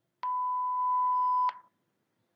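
A single steady electronic beep at one pitch, lasting a little over a second and cutting off suddenly: the cue tone that separates the segments of an interpreting-test dialogue, here marking the switch from the English segment to the Hindi one.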